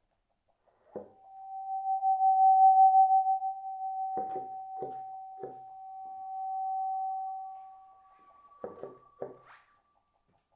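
Bassoon and live electronics in a contemporary piece: one long high sustained tone swells, fades and swells again before dying away. Sharp knocking pops sound three times in the middle and twice near the end, and a fainter, higher second tone enters partway through and bends upward at the close.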